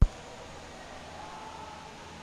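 A click as the broadcast audio cuts back in after a dropout, followed by a steady, fairly faint hiss of background noise with no voices.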